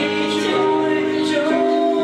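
Karaoke: a man singing into a handheld microphone over a backing track played through the room's speakers, with long held notes.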